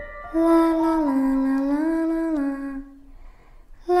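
A woman's voice singing a slow wordless tune on 'la', holding long notes that step down and back up. It stops about three seconds in, and a new note starts just before the end.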